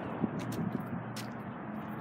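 Steady outdoor background noise with a few faint, short clicks, typical of footsteps on pavement.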